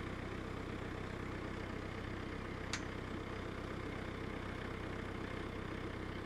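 Tractor running a hedge cutter, its engine a steady drone, with a single sharp click about two and a half seconds in.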